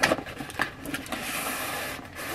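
Cardboard packaging being handled: a sharp knock, a couple of light clicks, then a steady scraping rustle of cardboard rubbing or sliding that lasts a little over a second.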